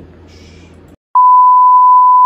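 Faint room noise drops out to silence, then a loud, steady, pure test tone starts about a second in: the single-pitch beep laid under television colour bars.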